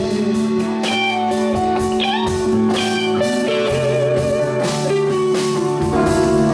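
Live rock band playing an instrumental passage: an electric guitar line with sliding, bending notes over bass and a steady drum beat with cymbals.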